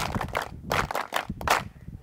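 Scattered handclaps from a few people, irregular and dying away after about a second and a half.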